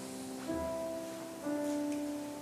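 Instrumental worship music from keyboard and acoustic guitar: held chords, with new notes coming in about half a second in and again near the end.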